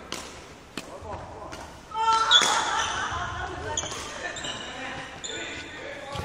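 Badminton play on a wooden hall court: a few sharp racket-on-shuttlecock hits in the first two seconds, then a run of short high squeaks, typical of shoes on the court floor.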